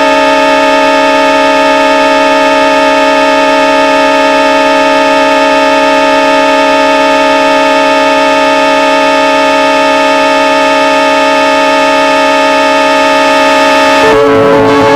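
Circuit-bent Yamaha PSS-9 Portasound keyboard locked in a crash from its voltage-starve pot. It holds a loud, unchanging buzzy drone chord that goes on with no keys pressed.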